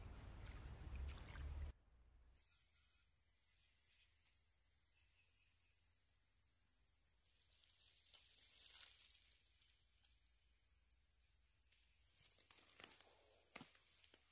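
Faint, steady, high-pitched insect drone over quiet outdoor ambience. For the first two seconds a louder low rumble and hiss is heard, cut off abruptly; later there are a few faint ticks and rustles.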